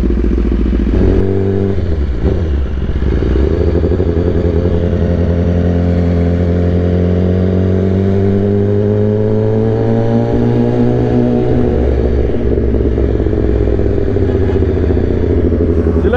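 BMW S1000RR's inline-four with an aftermarket Akrapovic exhaust, running low for about a second and then pulling away. The engine note climbs slowly through a long steady pull, drops back about two-thirds of the way through as the throttle is rolled off, then holds steady.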